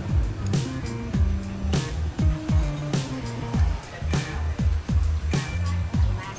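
Background music with a steady beat: deep bass notes that slide downward and sharp percussion hits.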